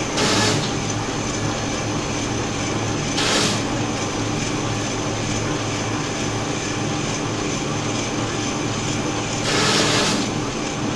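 Commercial strip-cut paper shredder running with a steady motor hum. Three short, louder bursts of paper being cut come about half a second in, around three and a half seconds, and just before the end.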